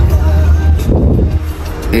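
Low, steady rumble of a moving car heard from inside the cabin.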